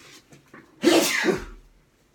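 A woman sneezing once: a single sudden, loud burst about a second in, lasting about half a second.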